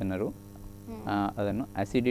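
Steady electrical mains hum under a man's speech, heard on its own in a short pause about half a second in.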